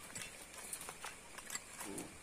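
Four or five light, irregular taps and knocks on hard dirt ground as a freshly speared snakehead fish comes off the spear tip and onto the ground. A short vocal sound comes near the end.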